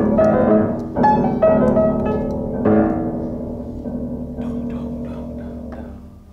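Upright piano being played: several chords struck in the first three seconds, each ringing on, then a few quieter single notes as the sound fades away.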